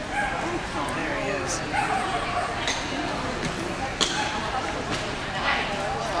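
A dog barks a few short times over a steady background murmur of many people talking in a large hall.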